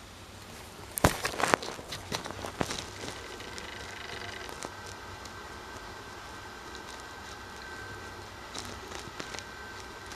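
Hands scraping and crumbling loose, gritty dirt and rock, giving a cluster of sharp clicks and scrapes in the first few seconds, the loudest about a second in.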